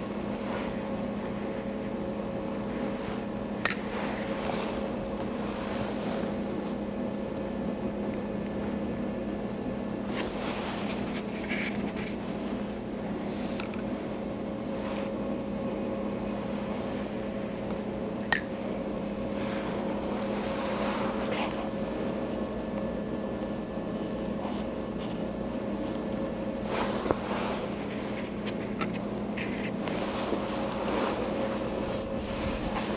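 Steady low mechanical hum of room ventilation, with three sharp clicks about four, eighteen and twenty-seven seconds in, and faint handling noises from fingers and a scriber needle working gum paste.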